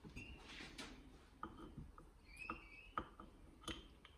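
Faint clicks and light taps of small metal engine parts being handled, a two-stroke piston and its wrist pin, several separate taps, with a few brief high chirps near the start and around the middle.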